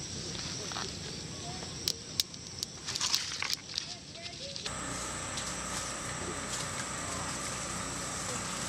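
Scattered sharp crackles and twig snaps from a small smoking kindling fire being tended by hand. About halfway through, they give way to a steady high hum.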